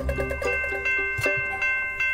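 Background music: held bell-like chime notes over a light, steady ticking beat.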